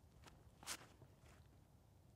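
Near silence with a few faint footsteps from a disc golfer's run-up across a concrete tee pad, one slightly louder step or scuff a little under a second in.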